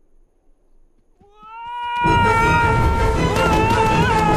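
A cartoon character's long, high scream, held with small wobbles, rises out of near silence about a second in. About two seconds in, loud music comes in under it.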